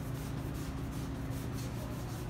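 Hand sanding of a plastic car bumper with 500-grit sandpaper: a steady rubbing rasp of paper drawn over the plastic, scuffing the surface so the paint will stick.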